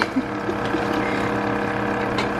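A kitchen fan running with a steady hum that holds a few fixed tones.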